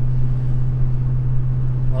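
Steady low exhaust drone with road rumble inside the cabin of a Ford pickup cruising at highway speed. The aftermarket Roush exhaust that replaced the muffler runs nearly straight through and still builds up pressure in the cabin.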